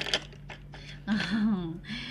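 A single sharp click right at the start, then a woman's voice briefly about a second in, over a steady low hum.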